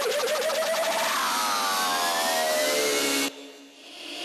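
Electronic synth effects in a sped-up nightcore track: a wavering, warbling tone, then a sweep that splits into one rising and several falling tones, cutting off suddenly near the end.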